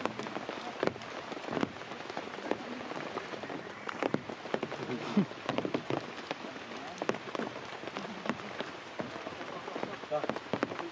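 Steady rain falling on stone and leaves, with frequent sharp taps of single drops landing close by.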